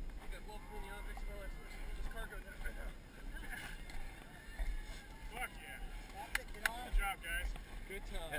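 Indistinct voices of other people talking in the background, with low rumble from wind and handling on the microphone and a couple of sharp knocks about six and a half seconds in.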